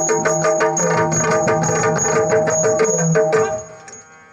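Yakshagana background ensemble playing: rapid strokes on the chande and maddale drums over a steady drone. The music stops abruptly about three and a half seconds in.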